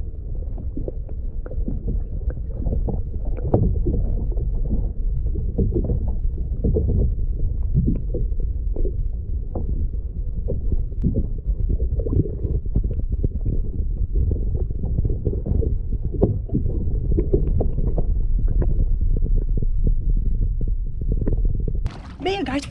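Muffled low rumble and sloshing of lake water heard through a camera held under the surface, with many small irregular knocks and clicks as water and hands move around the housing.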